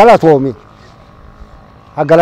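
A man's voice speaking a short phrase that ends about half a second in. Then a pause of about a second and a half with only faint, steady background noise, before he speaks again at the very end.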